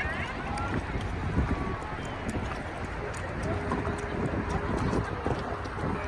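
Wind rumbling on the microphone aboard a moving sailboat, with water washing past the hull and voices in the background.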